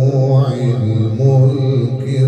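A man reciting the Quran in melodic tajweed style, amplified through a handheld microphone, drawing out long ornamented notes without a break.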